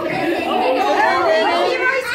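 Several voices talking over one another: party chatter.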